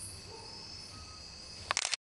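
Night insects, crickets among them, chirring steadily in a high pitch, with a short rattle of sharp clicks near the end.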